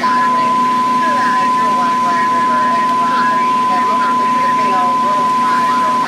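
One long, steady, high-pitched alert tone on a fire dispatch radio channel, with faint radio talk beneath it, sounding ahead of a dispatcher's announcement.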